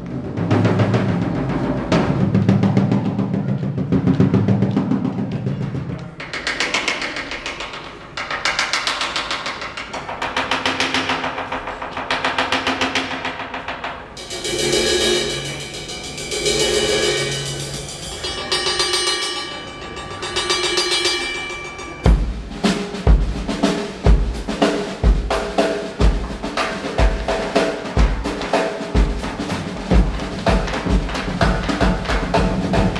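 Percussion ensemble of marimbas, vibraphones and drums improvising in Bulgarian 7/8. It opens with low drum rolls, moves to swelling rolled passages and ringing pitched mallet notes, and from about two-thirds of the way in a bass drum drives an uneven, limping pulse under the mallet instruments.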